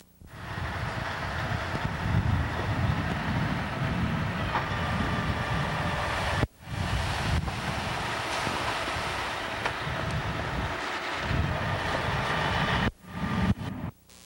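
Diesel construction machinery at work, trucks and a backhoe running, heard as a steady heavy rumble with wind buffeting the microphone. The sound drops out for a moment about six and a half seconds in, then carries on.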